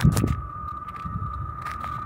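Wind buffeting the microphone, an irregular low rumble, with a thin steady high tone running under it.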